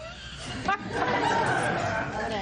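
Courtroom audience laughing and chattering, many voices overlapping, swelling about half a second in.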